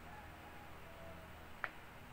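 Quiet room tone with a faint steady low hum, and one short sharp click about a second and a half in.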